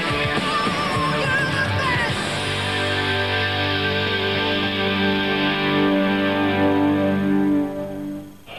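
Title music for a TV football programme: guitar-led rock. Wavering lead notes over the first two seconds give way to a long held chord, which cuts off just before the end.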